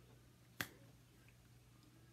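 A single short, sharp click about half a second in, over near-silent room tone with a faint low steady hum.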